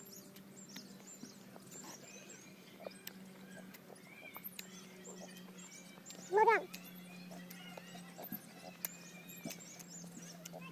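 Small birds chirping throughout over a steady low hum, with faint clicks of chewing. About six and a half seconds in comes one short, loud, high-pitched vocal call that rises and falls.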